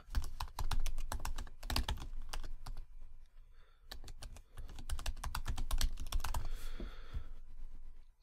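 Computer keyboard typing: rapid runs of key clicks as a line of text is typed, pausing briefly about three seconds in before carrying on, then stopping near the end.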